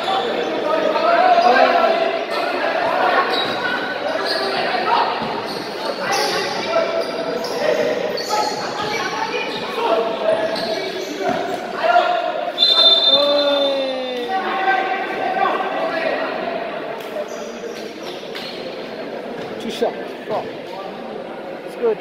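Basketball bouncing on a hard indoor court in a large, echoing hall, with players' voices throughout and a short, high referee's whistle about halfway through.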